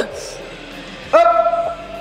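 A person's loud, high yell held on one pitch for under a second, starting about a second in, as a strained cry during a heavy dumbbell rep.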